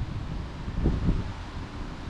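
Wind buffeting the microphone outdoors: an uneven low rumble with no engine or other machine sound.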